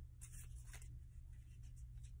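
Faint, brief rustles of tarot cards being handled, over a steady low room hum.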